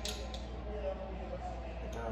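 A person's voice, low and faint, with a couple of small clicks near the start.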